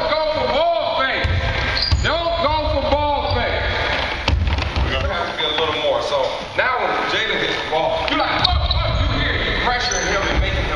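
Basketball practice on a gym court: basketballs bouncing and sneakers squeaking in short rising-and-falling squeals, with a couple of sharp knocks.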